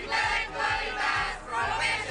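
A group of voices chanting together in short loud phrases over a steady beat, about three beats a second.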